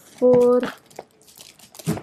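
Paper packing and a cardboard box rustling and crinkling as the box is handled and lifted out of a parcel, with a sharper rustle near the end.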